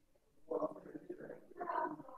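Soft, indistinct speech: a voice talking quietly, well below normal lecture level, starting about half a second in.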